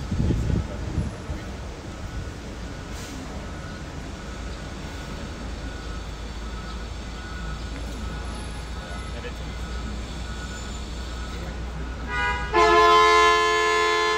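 Steady low rumble of city traffic and a moving tour bus, heard from its open top deck. About 12 seconds in, a loud sustained tone with several pitches comes in and holds.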